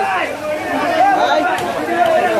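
People talking over one another: chatter of several voices.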